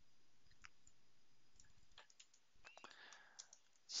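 Near silence with a few faint, scattered clicks from a computer mouse and keyboard.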